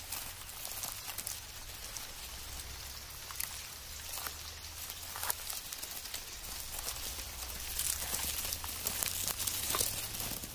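Desert locust hoppers moving and feeding among grass: a dense, continuous crackle and rustle of tiny clicks that grows a little louder near the end.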